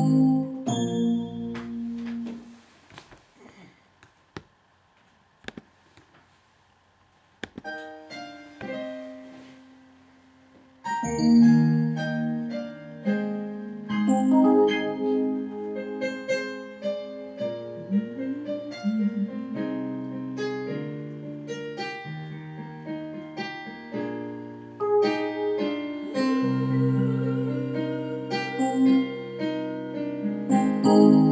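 Portable electronic keyboard played with a piano voice: chords ring out and fade about two seconds in, followed by a few seconds of near-quiet with faint clicks and then scattered single notes. From about eleven seconds in, full two-handed playing sets in, with bass notes under chords and melody.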